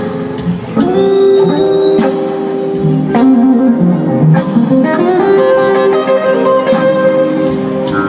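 A live band playing a blues number: electric guitar lines over held keyboard chords, with drums and cymbal crashes.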